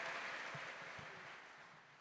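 Faint noise from a large seated crowd in a hall, with a couple of soft low knocks, fading out to silence.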